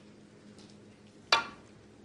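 Snooker cue tip striking the cue ball for the break-off: a single sharp click about a second and a quarter in, against a quiet hush in the hall.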